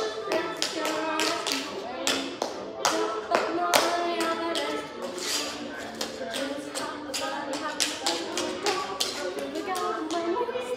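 Quick, irregular tapping of dance steps on a hard platform floor, the loudest sound, over music playing throughout.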